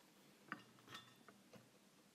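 Near silence with about four faint light clinks, the clearest about half a second in, as a thin painted hookah ash plate is fitted onto the hookah's shaft.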